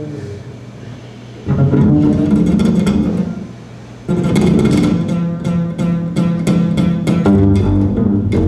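Acoustic double bass played pizzicato. A few plucked notes start about a second and a half in; after a brief lull a steady run of plucked notes follows, about three a second, with audible finger attack on the strings.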